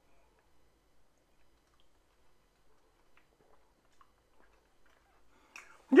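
Very quiet faint mouth sounds as a sip of bourbon whiskey is held and worked in the mouth, then a short breath out just before the end.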